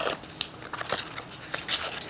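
Lazertran transfer paper being torn by hand, in a series of short rips with papery crackle, to give the cut-out image a rough edge.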